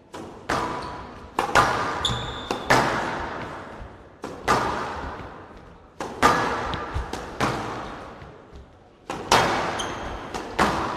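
A squash rally: the ball cracks off rackets and slaps against the walls of a glass court, one hit every half second to second and a half, each ringing on in a large hall. A couple of short high squeaks, typical of shoes on the court floor, come in between.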